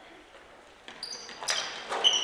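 A quiet gym, then from about a second in, sneakers squeak short and high on the hardwood basketball court and there is a single sharp knock, as players move in for the rebound of a missed free throw.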